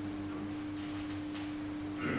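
A steady electrical hum at one constant pitch in the lecture-room sound system, with faint room noise beneath it.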